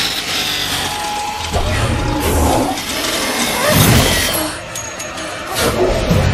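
Film action-scene soundtrack: score music mixed with sound effects of a fight with a mechanical metal bull, including hits and sweeping effects amid flying sparks.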